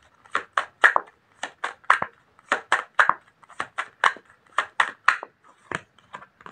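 Tarot deck being shuffled by hand: a run of quick, crisp card slaps and flicks, about three or four a second.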